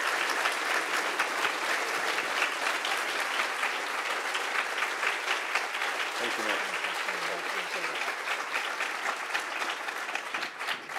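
Audience applauding steadily, a dense patter of many hands, with a brief voice over it a little past the middle.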